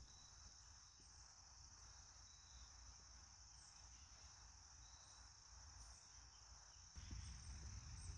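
Near silence: a faint, steady high-pitched hiss over a low rumble, the rumble rising slightly about seven seconds in.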